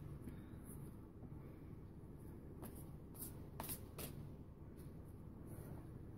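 Faint hand-shuffling of a tarot card deck: a few soft card clicks and flicks around the middle, over a low steady room hum.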